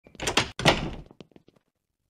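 A door opening and then shutting: two loud sounds about half a second apart, the second dying away, followed by a few faint clicks.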